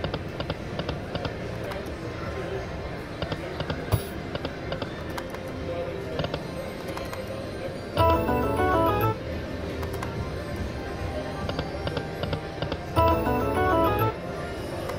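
Video slot machine playing its music over casino-floor din. Twice, about eight seconds in and again near the end, it sounds a loud jingle of chiming tones lasting about a second.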